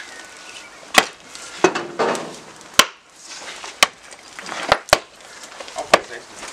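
Big wooden mallet striking a hot iron bloom on a stone anvil to consolidate it, about seven sharp knocks at uneven spacing, roughly one a second, two of them close together near the end.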